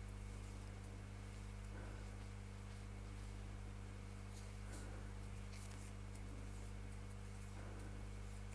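Quiet, with a steady low electrical hum and faint soft rustles of cotton thread and a crochet hook about every three seconds as stitches are worked.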